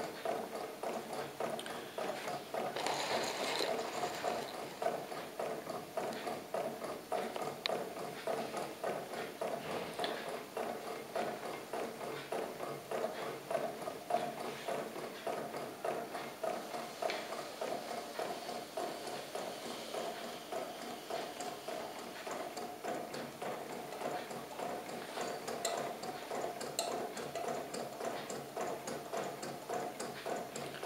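Homemade two-cylinder, slow-running Stirling engine running steadily, its crank and wire linkages giving a fast, even, rhythmic clicking.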